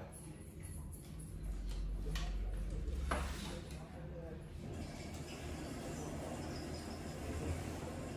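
Dry steel wool rubbing over window glass and frame in short scrubbing strokes, over a low steady hum.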